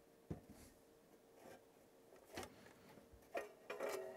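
A few faint clicks and light knocks, more of them near the end, from the metal front panel of an Eico 950B capacitor checker being handled and slid out of its cabinet.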